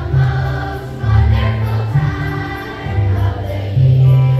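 A children's choir singing a Christmas song in unison over an accompaniment with a strong bass line.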